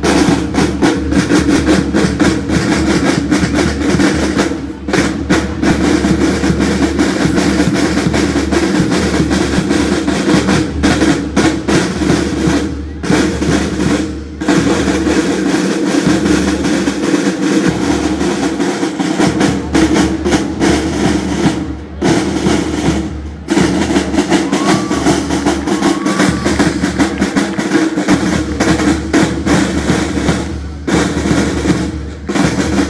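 A marching band's snare drums playing fast, dense drumming in unison, stopping for a moment about five times between phrases.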